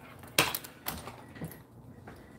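A sharp knock about half a second in, followed by two lighter knocks about half a second apart.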